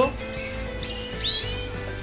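Canaries chirping: a few short, high calls that sweep downward, the clearest about a second and a half in, over a faint steady tone.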